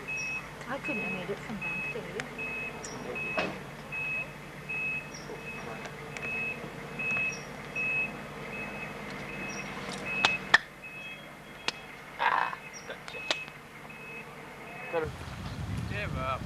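A high electronic beep repeating evenly about twice a second over a low steady hum, with a few sharp clicks; it cuts off abruptly near the end.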